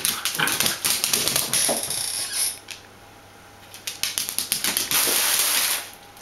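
Bichon Frisé puppies' claws clicking and scrabbling on a hard tile floor as they tussle over a plush toy, mixed with a few short puppy vocal sounds. The scrabbling pauses for about a second and a half in the middle, then resumes.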